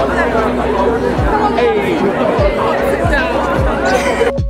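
Music with a steady beat playing under a crowd of people chattering.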